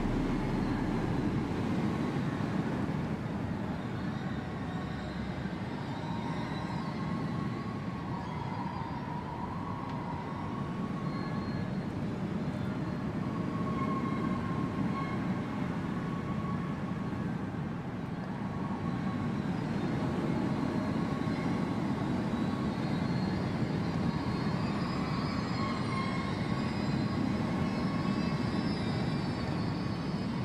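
A steady low rumbling drone with faint wavering high tones drifting above it, easing off a little early on and swelling again past the middle.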